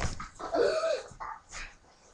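A knock as the webcam is jolted, then a short, wavering, whine-like vocal sound that bends up and down in pitch, followed by a couple of fainter short vocal sounds.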